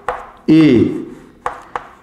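Chalk writing on a blackboard: a few sharp taps and scrapes as letters are chalked, one right at the start and two about a second and a half in.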